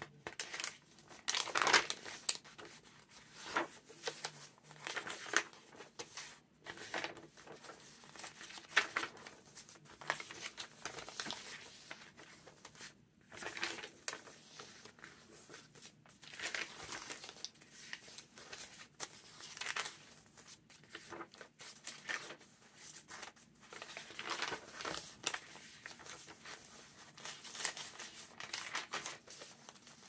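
Pages of a handmade junk journal turning and being smoothed down by hand, the stiff, wrinkled paper rustling and crinkling in irregular bursts, loudest about two seconds in.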